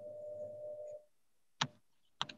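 A faint steady tone held for about a second, then a single short click.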